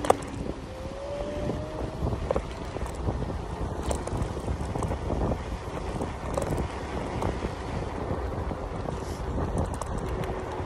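Wind on the microphone and tyre rumble from a Zero 10 electric scooter riding over sand-strewn paving, with many small knocks from the bumpy surface. A sharp knock comes right at the start, and a faint rising motor whine about a second in.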